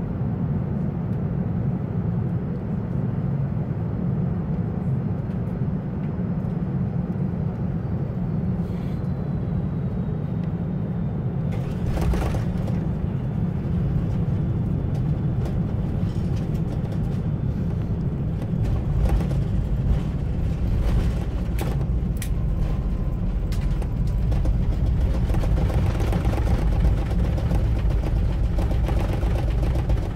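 Cabin noise of a Boeing 747-400 landing, heard from a window seat: a steady rush of engine and airflow noise. About twelve seconds in the sound steps up, with rattles. The rumble then deepens and a louder roar builds over the last few seconds as the jet rolls down the runway.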